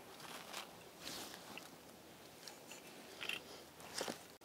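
Faint, scattered rustles and soft crunches of a cloth sheet being handled and draped over a potted plant.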